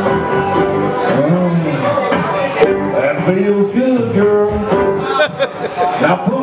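Karaoke backing track playing, with a man's voice over it from about a second in.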